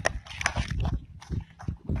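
Footsteps on a dry dirt path: a loose series of dull thuds, with a few sharper knocks from the handheld phone being jostled.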